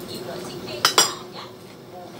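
Two sharp clinks of tableware against a ceramic dish, close together about a second in, over a faint steady hum.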